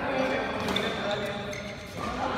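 Doubles badminton play on a court mat: a brief shoe squeak about a second in and sharp racket strikes on the shuttlecock, over voices.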